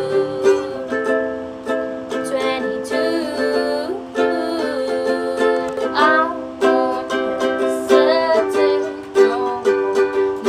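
Ukulele strummed steadily through the C, G, A minor, F four-chord progression, with a girl's voice singing a pop melody over it.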